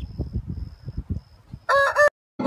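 Low, uneven rumbling noise, then near the end a rooster starts a loud crow that is cut off after about half a second.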